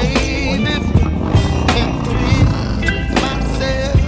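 Music with melodic lines and drum hits over a steady low rumble.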